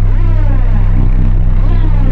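A loud, steady low hum runs throughout, with a faint voice murmuring over it.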